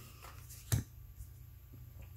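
A tarot card laid down on the deck: a single short tap about a third of the way in, over a low steady room hum.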